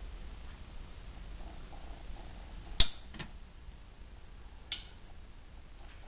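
A low steady room hum, broken by a sharp click about three seconds in, a fainter click just after it, and another small click near the end.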